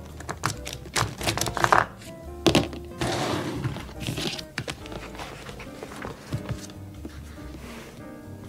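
Pens and markers clattering in a wire desk cup as a highlighter is picked out, a loud knock about two and a half seconds in, then the rustle of a large hardcover Bible being opened and its pages handled, over background music.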